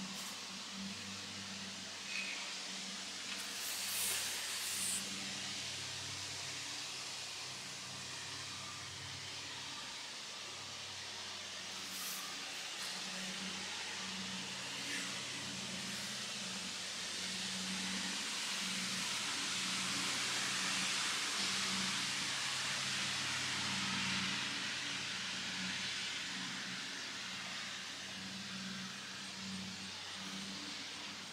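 Mack EconoDyne turbocharged diesel engine idling: a steady low hum with a broad hiss over it that swells and fades through the middle.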